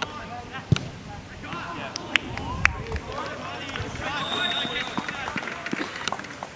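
Players shouting to each other on a soccer pitch, with a few sharp knocks of the ball being kicked in the first three seconds. About four seconds in, a referee's whistle sounds as one steady blast of a little over a second.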